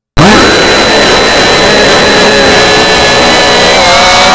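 Shin Godzilla roar sound effect: a very loud, harsh, grating blast that swoops up in pitch at the start and then holds steady.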